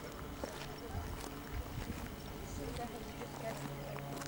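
Outdoor ambience picked up by a camcorder microphone: low wind rumble surging on the mic, with faint, distant voices of people.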